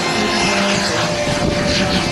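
Radio-controlled model jet with a miniature turbine engine flying a low pass: a steady jet rush with thin, high whining tones.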